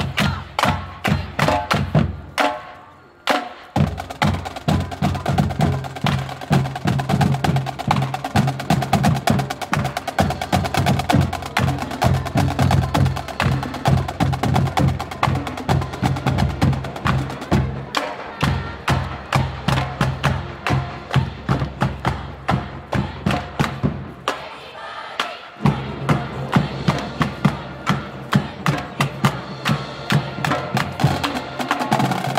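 Marching band drumline of snare, tenor and bass drums playing a fast, driving street cadence with rolls and crisp rim clicks. There is a short break about three seconds in, and the bass drums drop out for a moment later on.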